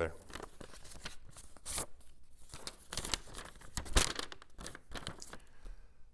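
A folded sheet of paper being unfolded and handled: irregular crinkles and rustles close to the microphone, the sharpest crackle about four seconds in.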